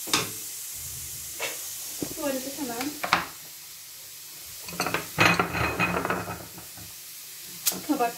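Grated carrots sizzling in hot oil in a pan while a wooden spatula stirs them, with a few sharp knocks of the spatula against the pan. Around the middle comes a louder stretch of scraping and clatter.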